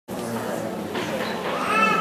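Murmur of voices in a hall, with a short, high-pitched cry from a child near the end.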